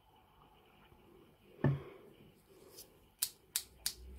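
Small plastic syringe being flicked to clear air bubbles from the dose in it: a few faint clicks, then a quick run of sharp clicks in the last second.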